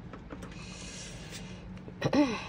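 Quiet handling noise: soft rustling with a few light taps over a low steady hum.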